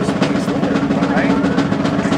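Field snare drum playing a steady, continuous roll over a steady low tone.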